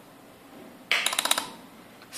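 A short, rapid run of metallic clicks starting about a second in, lasting about half a second and then dying away.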